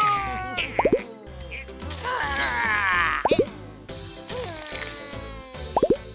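Cartoon plop sound effects over children's background music: three sets of quick rising bloops about two and a half seconds apart, as the ointment zaps the germs.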